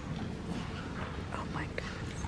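Quiet, indistinct murmuring and whispering of an audience in a hall over a low hum, with a few small clicks near the end.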